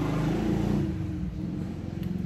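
A motor vehicle's engine running nearby, a low hum that is loudest in the first second and eases off a little after.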